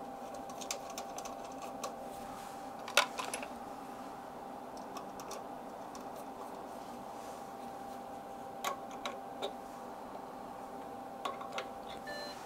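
Faint clicks and taps of a calibration load standard being fitted to a vector network analyzer's reflection port, over a steady electrical hum. Two more clicks near the end come from a front-panel key press that starts the calibration sweep.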